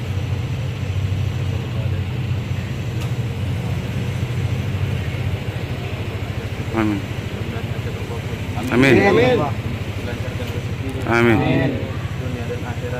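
A vehicle engine idling with a steady low hum, while a man's voice recites a prayer over it in short phrases, loudest about nine seconds in and again about eleven seconds in.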